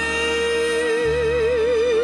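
A female alto voice holds one long sung note, straight at first, then with a slow, even vibrato from a little under a second in. It rides over a lush string orchestra, with a bass note that changes about a second in.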